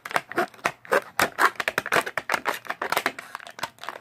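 Plastic packaging being handled as a figure is worked out of it: a quick, irregular run of crinkles and clicks.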